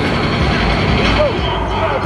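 Indistinct shouts and voices of players and coaches in a large indoor practice facility, over a steady low rumble.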